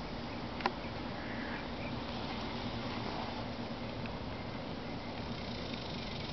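Steady outdoor background noise, an even hiss with no clear pitch, with one short click a little over half a second in.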